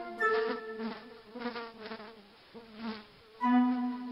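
A housefly buzzing in uneven surges, its pitch wavering up and down. Sustained pitched musical notes sound at the start and again near the end.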